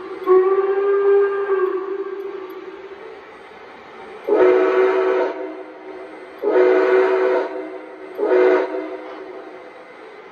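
Model steam locomotive's onboard sound system sounding a multi-tone chime steam whistle: one long blast that trails off, then two long blasts and a short one.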